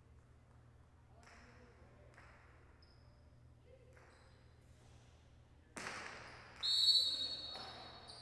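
A jai alai ball (pelota) strikes the court with a sudden sharp crack about six seconds in, ringing on in the big hall. A loud, steady, high-pitched tone follows it, lasts about a second and fades. Before this there is only a faint murmur of the hall.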